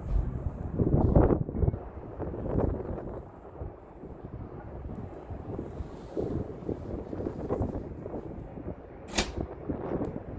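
Wind buffeting the microphone in irregular gusts, strongest about a second in, with a sharp click near the end.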